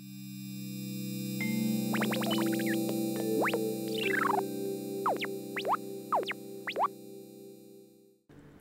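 Short electronic sponsor jingle: a held synthesizer chord swells in, with a run of quick rising and falling synth sweeps over it, then fades out near the end.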